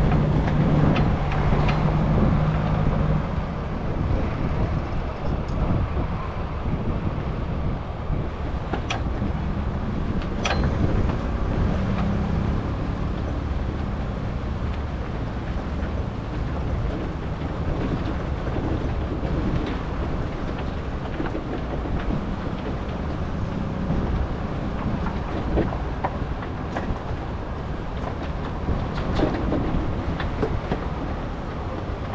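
Heavy semi truck running: a steady low engine and rolling noise, with two sharp clicks partway through.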